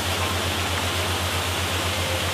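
Steady rushing of a waterfall, an even wash of falling water, with a low, fast-pulsing hum beneath it.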